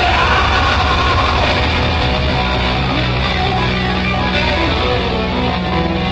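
Live rock band playing at full volume: electric guitars, bass guitar and drum kit, steady and loud throughout.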